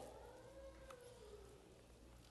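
Near silence: room tone with a steady low hum, and a very faint drawn-out pitched sound that bends slightly in pitch during the first half.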